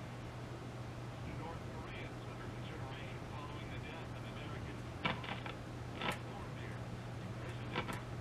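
Faint AM radio station audio and static from the speaker of an NRI Model 34 signal tracer being tuned, over a steady low hum. Three sharp clicks in the second half, from its rotary knobs being switched.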